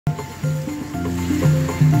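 Casio MZ-X300 arranger keyboard playing held chords over a stepping bass line, the notes changing every few tenths of a second. It is being played to check that it works.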